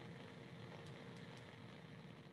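Bunsen burner flame hissing faintly and steadily, slowly getting quieter as the gas tap is turned down toward a moderate flame.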